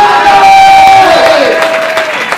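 A man's long, high shouted cry through a microphone and loudspeakers, held steady for about a second and then sliding down in pitch as it fades, with a crowd's noise beneath it.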